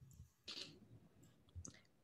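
Near silence with a few faint clicks and a short rustle about half a second in.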